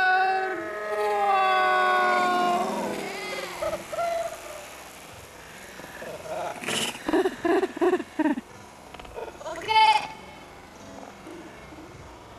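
Voices slowed down by slow-motion playback: a long, drawn-out call with slowly gliding pitch fills the first three seconds. After it comes a quieter stretch with a run of short voice-like bursts in the middle and a sharp sound near the end.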